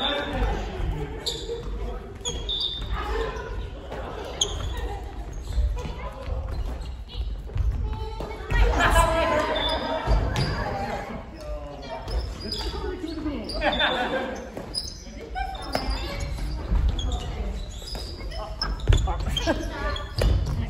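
Badminton rally in a reverberant sports hall: sharp racket hits on the shuttlecock and footfalls on the wooden court floor, with players' voices calling out now and then.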